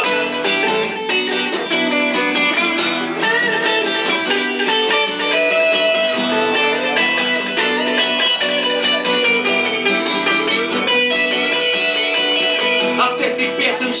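Instrumental guitar break with no singing: an acoustic guitar strummed in steady chords while an electric guitar plays a melodic lead line over it.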